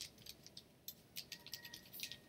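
Computer keyboard being typed on: a string of light key clicks, one near the start, another about a second in, then a quick run of several keystrokes in the second half.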